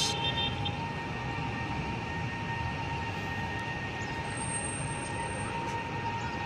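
Steady city traffic noise, a low even rumble with a thin steady whine held on one pitch.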